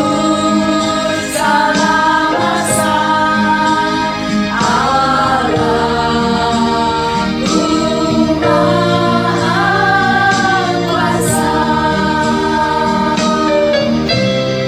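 Several women singing a Christian worship song together in long held phrases, with steady low notes sounding underneath.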